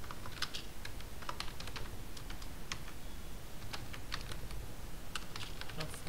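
Typing on a computer keyboard: a run of irregular key clicks as a short line of text is typed.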